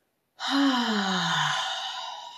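A woman's long, audible sigh out through the open mouth, starting about a third of a second in. The voice falls steadily in pitch and trails off into breath. It is a deliberate releasing breath to settle into meditation.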